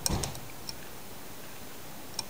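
A few faint, light clicks of a Torx driver tip against a butterfly knife's pivot screw, over steady hiss.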